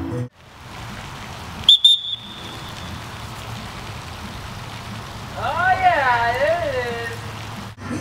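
A lifeguard's whistle gives one short, sharp blast. A steady hiss follows, and later a person's high, wavering call lasts about two seconds.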